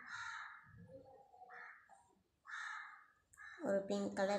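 A bird calling outside: about four harsh calls, each under a second, with short gaps between them.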